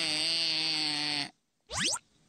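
Cartoon background music that cuts off abruptly about a second in, then, after a brief gap, a short, quick upward-sliding sound effect as the episode's end card appears.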